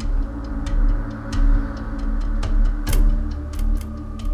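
Tense dramatic underscore: a sustained low drone with a slow, deep bass pulse and scattered clock-like ticks.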